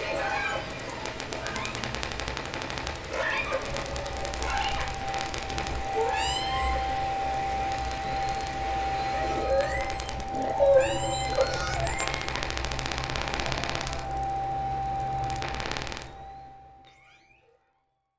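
Southern Resident orca calls from a hydrophone field recording: repeated rising calls over a dense buzz of rapid clicks, with a steady low hum. A single steady synth note is held underneath from a few seconds in. Everything fades out about two seconds before the end.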